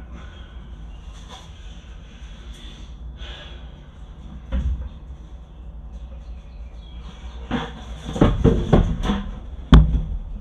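A plastic five-gallon bucket knocking against the walls of a plastic container as it is brought inside. There is a single thump about halfway through, then a run of hollow knocks and clatter, ending in one sharp, loud bang.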